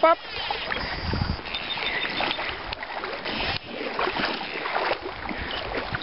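Water sloshing and splashing in an irregular, crackling wash, as of legs wading through a shallow river.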